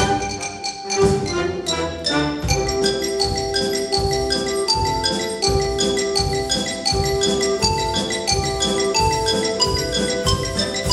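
Xylophone playing a fast solo line of rapid mallet strikes, with a concert wind band accompanying in sustained held notes.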